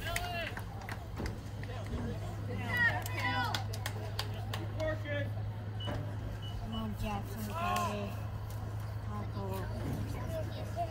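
Scattered calls and shouts from players, coaches and sideline spectators on a football field, carried from a distance over a steady low hum.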